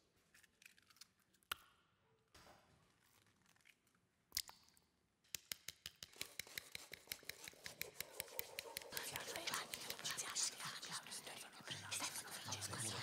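Fork beating eggs in a well of flour. A few scattered taps and knocks come first. From about five seconds in, a fast run of clicking strokes grows denser and louder.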